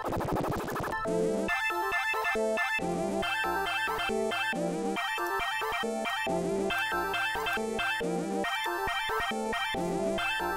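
A trap beat made in FL Studio playing through the Gross Beat effect. It opens with about a second of warbling, pitch-smeared sound from the effect, then the melody and drum loop plays on in a steady repeating rhythm.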